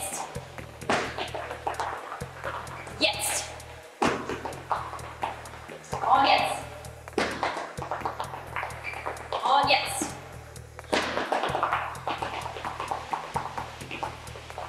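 Background workout music with a steady beat, with a voice calling out short commands every few seconds and quick footfalls from people sprinting in place on a gym floor.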